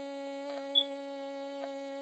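A singer holding one long, steady note at the end of a sung phrase of Hmong sung verse, with no change in pitch.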